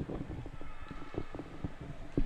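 Handling noise from a commentator's headset microphone that is being knocked almost off the face: irregular bumps and rubbing, several small knocks a second.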